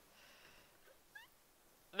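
Near silence: quiet room tone, with one brief, faint rising squeak a little after a second in.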